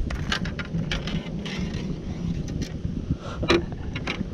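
Wind buffeting the camera microphone, an uneven low rumble, with several sharp clicks and knocks of handling on a boat deck.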